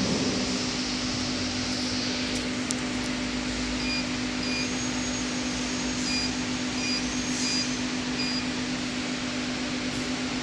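Steady hum of a pillow-type flow packing machine. Over it, in the second half, come about six short high beeps from its touchscreen control panel as the buttons are pressed.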